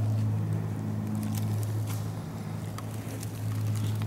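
A steady low hum with a few faint ticks over it.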